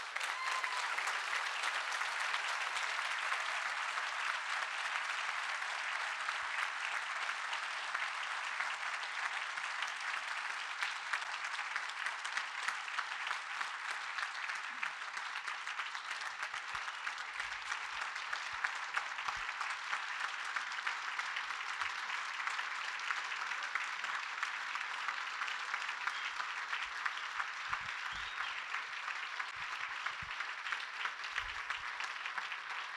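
A roomful of people applauding: a long, steady ovation of many hands clapping. It starts all at once and eases a little in the second half.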